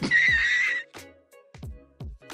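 Short comedy sound effect dropped in with a laughing meme: one high, wavering, whinny-like cry lasting under a second.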